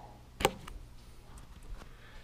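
A single sharp plastic click about half a second in, then a few faint ticks: a USB capacity meter being pushed into a power bank's USB port.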